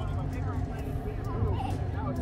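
Low, steady rumble of an M29 Weasel's Studebaker engine running as the tracked vehicle drives, with people's voices calling out over it.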